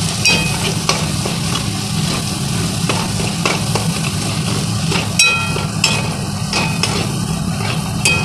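Chopped onion, garlic and capsicum sizzling in butter in an aluminium kadai while a metal spatula stirs them, scraping the pan with occasional clicks. A steady low hum runs underneath.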